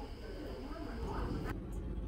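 Faint, indistinct voices over a low steady rumble; the background hiss cuts off abruptly about one and a half seconds in.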